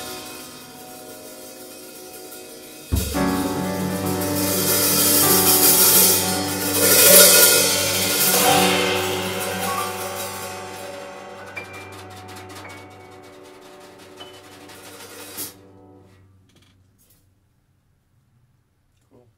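An upright piano and a drum kit close a slow jazz ballad. About three seconds in a low piano chord is struck, and a cymbal wash swells and fades over it. Everything is damped about fifteen seconds in.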